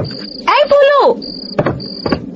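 Crickets trilling in short bursts of one high, steady note. A person's voice cuts in over them briefly, about half a second in, and is the loudest sound.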